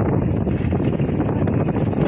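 Steady road and engine noise inside a moving car's cabin, with wind rushing over the microphone.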